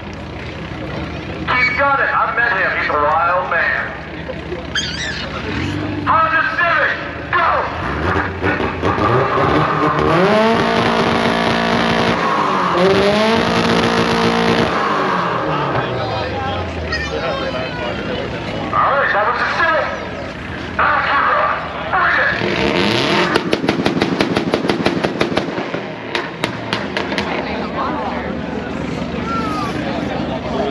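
A drag car's engine revving up and falling back twice at the starting line, over crowd chatter. Later a quick run of sharp pops, several a second, lasts about three seconds.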